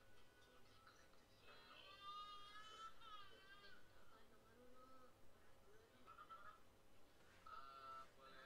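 Faint background music with a wavering melody, loudest about two to three seconds in, playing under a silent countdown.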